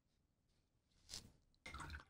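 Near silence: room tone, with a brief faint soft sound a little past the middle and another just before the end.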